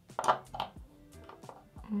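Quiet background music with a short noisy rustle about a quarter second in and a few soft clicks after it, then a brief hummed "mm" at the very end.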